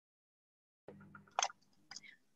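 Dead silence, then about a second in a computer microphone opens with a faint low hum, picking up small mouth clicks and a short breath just before someone speaks.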